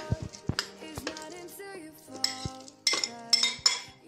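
A metal spoon clinking and scraping against a glass bowl as chopped grapefruit pieces are pushed out into a plastic blender jug, with a run of sharp clicks and knocks.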